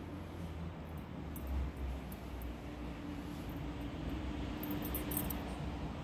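Street ambience of distant road traffic: a steady low rumble with a faint engine hum that grows more prominent in the second half.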